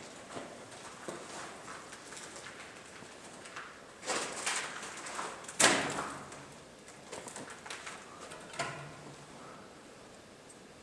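Scuffing and scraping of a person clambering through a cramped concrete bunker, clothes and camera rubbing against the walls. A rougher scrape comes about four seconds in, and a sharp knock just after is the loudest sound.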